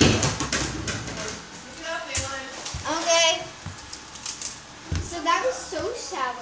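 Indistinct voices talking and exclaiming in short bursts, with a few dull knocks and handling bumps close to the phone. The loudest is a thump at the very start.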